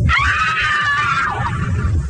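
A high, wavering shriek over a low rumble, lasting about a second and a half and then fading, as from a scene in a scary film.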